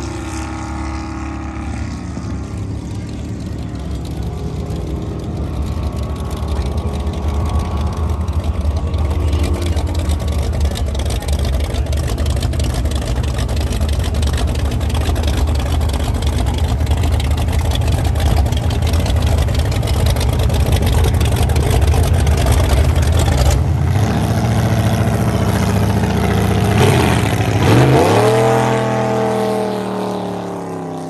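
Supercharged V8 race-boat engine running at low speed with a deep, steady rumble that slowly grows louder as the boat comes by. Near the end the revs swoop up and back down.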